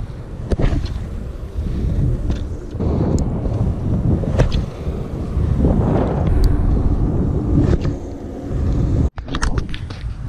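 Wind buffeting the microphone in a steady low rumble, with a few faint clicks. The sound cuts out for an instant about nine seconds in, then the wind rumble resumes.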